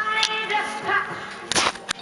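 Television audio playing in the room: music with a pitched, sung-sounding line. About one and a half seconds in comes a short, loud, noisy burst, then a sharp click.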